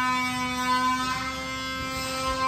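A steady, pitched hum with many overtones, holding one note and easing slightly in loudness.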